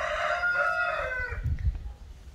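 A rooster crowing: one long drawn-out crow that ends about one and a half seconds in. It is followed by a brief low rumble.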